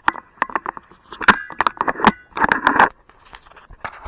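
Handling noise from a camera being pulled off its mount and moved by hand: a run of sharp clicks and scraping rubs close to the microphone, busiest in the middle and thinning out near the end.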